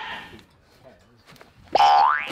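Audio of an edited-in comedy meme clip: a short voice fades out in the first half second, then after a faint stretch a loud pitched sound effect begins near the end.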